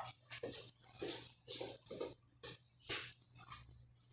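A man's short, irregular grunts and scuffling noises, about a dozen quick sounds, faint and heard through a video-call microphone, with a steady low hum beneath.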